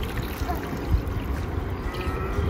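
Steady rush of flowing river water.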